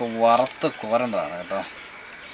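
A man speaking, with a brief cluster of sharp clicks about a third of a second in.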